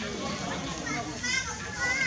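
Two short high-pitched squeals from a newborn macaque, the second falling in pitch, over a low murmur of human voices.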